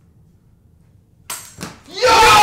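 Faint room tone, then about a second and a half in, two sudden loud bursts followed by men starting to yell.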